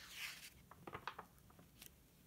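Quiet sound of a paper page being turned in a picture book: a soft swish at the start, then a few faint clicks and rustles as the book is handled.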